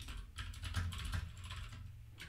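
Typing on a computer keyboard: a fast, uneven run of key clicks as lines of code are entered.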